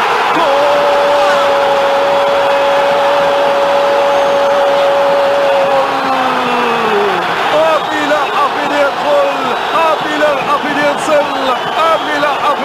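A TV football commentator's long held goal cry, steady in pitch for about five seconds and then falling away, followed by rapid excited shouting, over a cheering stadium crowd.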